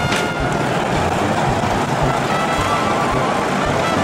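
Roller coaster chain lift running as the car is pulled up the lift hill: a steady mechanical rattle with a sharp clank at the very start. Music plays over it.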